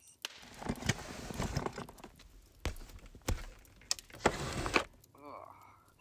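Handling noises: rustling and scraping with a few sharp knocks, then a short creak near the end.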